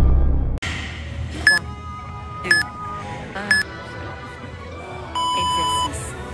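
Workout interval timer counting down: three short high beeps a second apart, then one longer, lower beep that marks the start of a 20-second work interval. Music cuts off abruptly just before the beeps.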